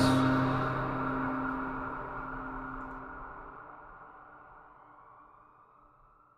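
The song's final guitar chord ringing out and fading steadily away, dying to near silence by the end.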